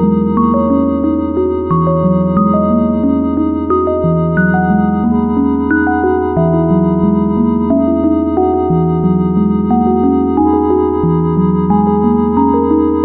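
Experimental electronic synthesizer music. A steady low drone sits under a bass line that steps to a new note about every second and a half, while a higher line of held notes moves above it.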